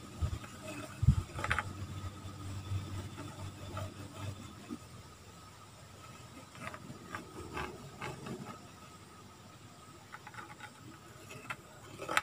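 A thin pointed tool scratching along a wooden board as the outline of a parang blade is traced onto it, with a low thump about a second in and light knocks as the blade and board are handled. A low steady hum runs underneath.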